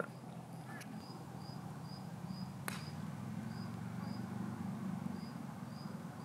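A cricket chirping steadily in short, high chirps about two a second, over a faint low background hum. A single sharp click comes about two and a half seconds in.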